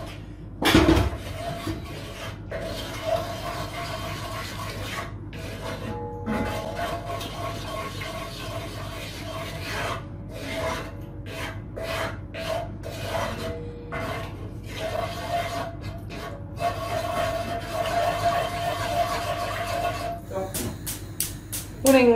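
Wooden spoon stirring and scraping a cream sauce along the bottom of a heavy casserole pot, in repeated short strokes, with one louder knock about a second in.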